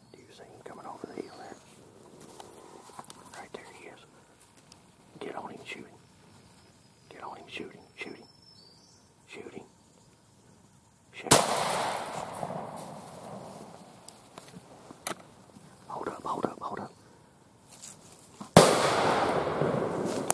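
Two shotgun blasts in the woods, about seven seconds apart: the first about eleven seconds in, the second near the end. Each is sudden and has a long echoing tail. They are two hunters firing on two gobblers, a double.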